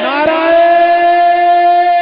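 A man's voice holding one long sung note, sliding up at the start and then held steady, at the close of a chanted line of a religious sermon.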